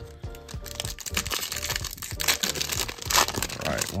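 Foil trading-card pack wrapper crinkling as it is torn open and the cards are slid out, loudest twice in the second half, over background music.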